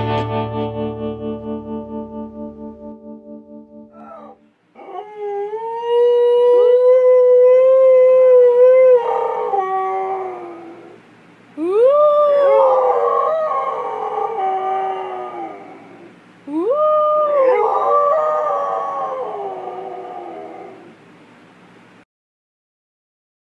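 The song's last chord ringing out and fading over the first few seconds, then a Siberian husky howling: three long howls, the first held steady for about four seconds, the next two each swooping sharply up at the start before sliding down.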